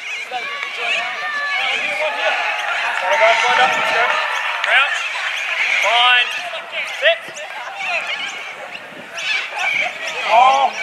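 Rugby league players shouting calls to each other on the field while packing down for a scrum, several voices overlapping without clear words.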